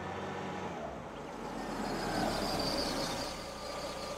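A small Chevrolet hatchback driving slowly into a paved yard: its engine running and tyres rolling, a steady noise.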